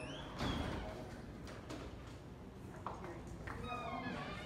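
Footsteps and handling noise from a hand-held phone carried while walking, over indoor room noise, with faint voices in the background.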